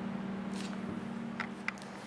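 Steady low electrical hum with light handling of a stiff cardstock card: a soft rustle about half a second in, then two faint clicks about a second and a half in.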